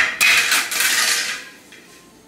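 Rustling, lightly clattering handling noise from hands moving the plastic helmet, starting suddenly and fading out after about a second and a half.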